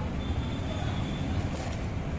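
Steady low rumble of street traffic. A faint thin high tone runs through the first second, and a brief hiss comes about one and a half seconds in.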